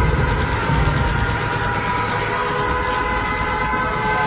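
Live concert music in a song's instrumental introduction: a sustained chord of several held electronic tones over a low bass rumble, with no vocals.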